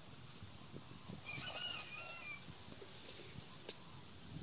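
Faint animal call, a wavering pitched cry lasting about a second, over a low outdoor background, with one sharp click near the end.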